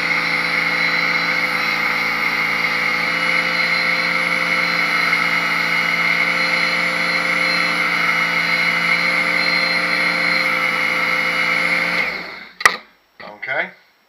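Work Sharp electric knife and tool sharpener running steadily, a knife blade drawn through its angle guide against the abrasive belt. About twelve seconds in the motor is switched off and winds down, followed by a sharp click and some handling noise.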